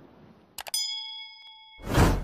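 Subscribe-button sound effect: two quick mouse clicks, then a notification bell ding that rings for about a second. Near the end a loud rush of noise swells up.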